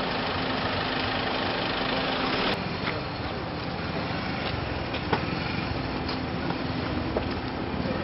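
A motor vehicle's engine running at idle under indistinct voices. A steady low hum in the mix stops abruptly about two and a half seconds in, and a few faint clicks follow.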